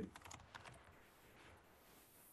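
Faint typing on a computer keyboard: a quick run of light key clicks in the first second, then near silence.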